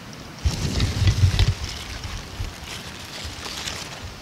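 Wind gusting on the microphone, strongest from about half a second to a second and a half in, with crackly rustling of pepper plant leaves.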